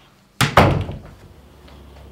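A front door slammed shut about half a second in: a sharp double bang that dies away within half a second.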